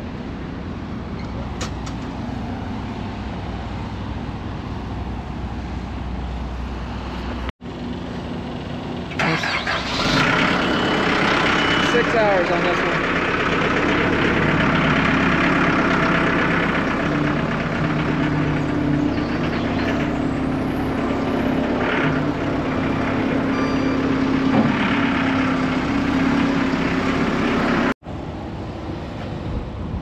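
Heavy-equipment diesel engine running nearby, a steady low hum at first. From about nine seconds in it grows louder and fuller and holds steady.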